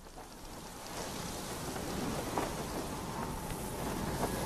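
Rain falling steadily with a low rumble beneath it, growing louder about a second in.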